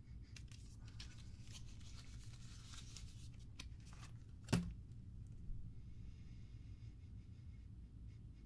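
A paperboard soap box being handled and opened, with papery scraping and rustling for the first four seconds or so as the bar of soap is worked out of it. A single sharp tap comes about halfway through, then things go quiet.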